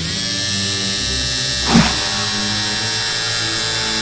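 Electric hair clippers buzzing steadily while shaving a head, with a brief louder sound a little under two seconds in.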